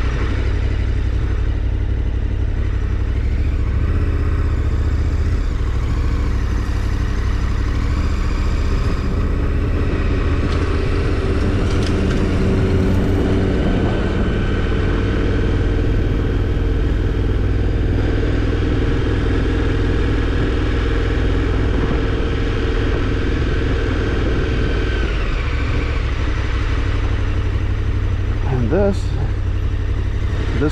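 KTM 1290 Super Adventure R's V-twin engine running steadily at low road speed, its note easing off in the last few seconds as the bike slows to a stop.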